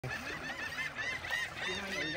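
A flock of gulls calling: many short, arched calls overlapping in quick succession.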